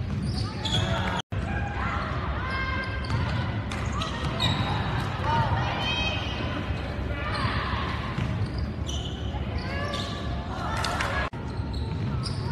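Game sound from a basketball court: a basketball bouncing on the hardwood floor, sneakers squeaking, and voices calling and shouting from players and spectators. The audio cuts out for an instant about a second in and again near the end.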